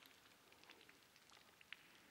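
Near silence with a few faint, scattered soft crackles of fingertips touching the skin of a face. The clearest comes about three quarters of the way in.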